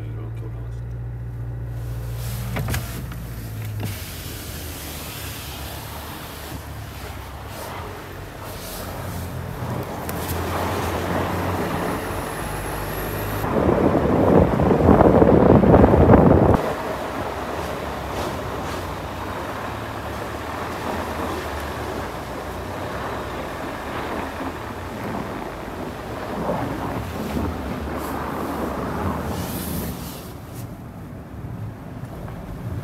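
Cabin sound of a Land Rover Defender driving slowly in snow mode on a snowy, icy road: a low, steady engine hum with road noise. A loud rushing noise lasts about three seconds around the middle.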